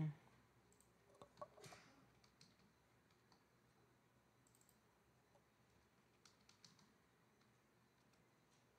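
Faint, scattered computer keyboard key clicks as code is typed, with pauses between them.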